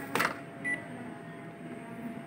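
Ricoh MP 8001 copier humming steadily as it runs, with a short sharp knock just after the start and a single short high beep from the machine about two-thirds of a second in.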